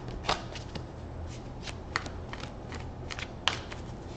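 A deck of tarot cards being shuffled by hand: a run of irregular light clicks and snaps as the cards slide and strike against each other.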